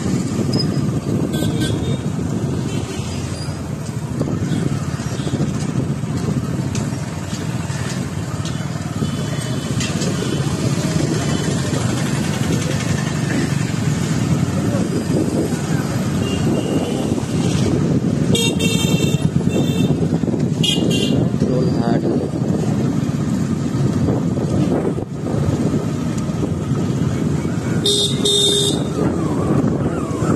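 Steady motorbike engine and traffic noise on a busy street, with vehicle horns beeping: a quick run of short beeps about two-thirds of the way through and another toot near the end.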